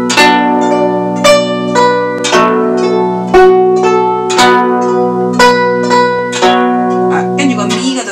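Guzheng plucked with finger picks, playing a melody of about two notes a second. Each note starts sharply and rings as it fades, over low notes left sounding underneath.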